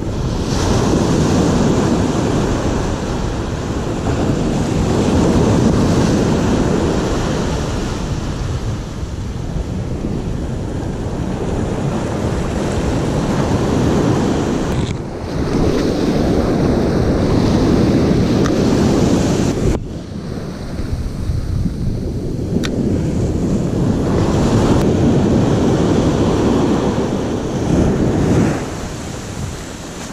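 Ocean surf breaking and washing up the beach, with wind buffeting the microphone. The rush rises and falls in long surges.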